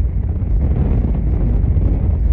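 Strong wind buffeting the microphone during a supercell thunderstorm: a loud, steady low rumble.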